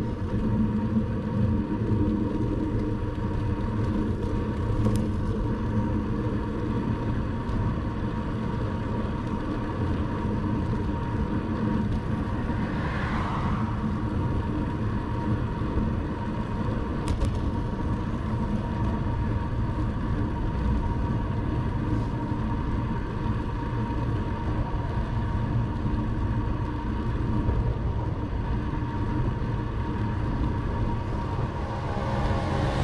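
Steady wind and road rumble picked up by a bicycle-mounted camera riding at about 25–29 km/h, with a thin steady whine over it. A brief swell of noise rises and fades about thirteen seconds in.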